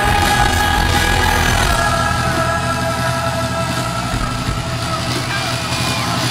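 Rock band playing loud live through an arena PA, with a held sung note over a heavy, rumbling low end.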